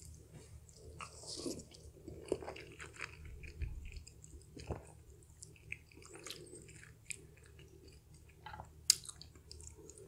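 A person chewing and eating a mouthful of dumplings and noodles, with wet mouth sounds and scattered small clicks of a spoon and chopsticks. There is one sharper click near the end.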